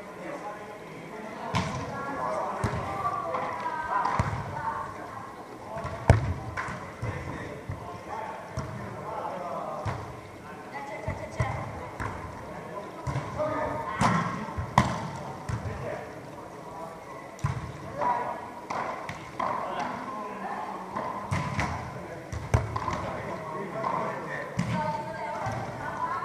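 Volleyballs struck by hands on sand courts in a large indoor hall: sharp slaps at irregular intervals, the loudest about six seconds in, over indistinct players' voices.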